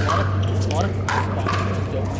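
Pickleball rally: short, sharp pops of paddles striking the plastic ball, the strongest about a second in, over background voices.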